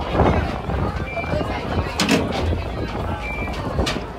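Two short high electronic beeps from wristband scanners at festival entry gates, each signalling an accepted scan. Background voices and a low rumble run under them.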